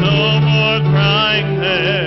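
Church choir singing a hymn, the voices holding long notes with a wavering vibrato.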